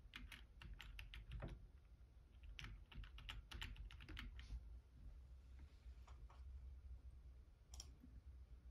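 Faint typing on a Logitech computer keyboard: two quick runs of key clicks in the first half, then a few scattered keystrokes.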